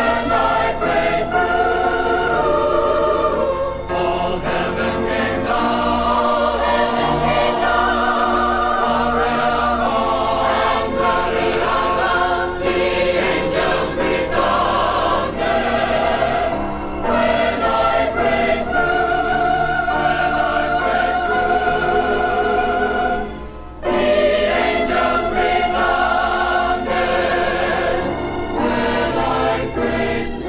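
A forty-voice choir singing a gospel song in sustained, full harmony with vibrato, played from a vinyl LP. The singing breaks off briefly about three-quarters of the way through, then comes back in.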